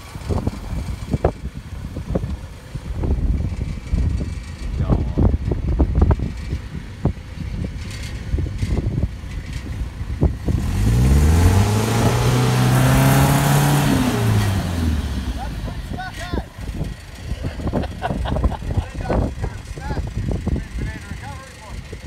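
Subaru Outback's engine revving up and back down over about four seconds, about halfway through, with a loud hiss as its wheels spin in the mud: the car is bogged and not moving. A low rumble of wind on the microphone runs under it.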